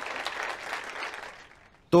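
Audience applauding, a short round that dies away about a second and a half in.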